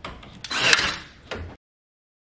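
Cordless nail gun fixing wooden door casing: a sharp click, a louder burst with a crack about three-quarters of a second in, then a second shorter burst, before the sound cuts off abruptly.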